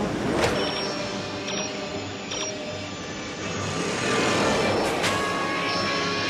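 Movie sound effects of the DeLorean time machine over music: a few short electronic beeps from the time-circuit controls, then a louder rushing vehicle sound from about four seconds in as the car flies.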